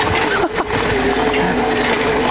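Electric motor of a YOSEPOWER e-bike conversion kit whining at a steady pitch under level-five power assist as the tricycle is ridden, over a rushing noise of wind and tyres.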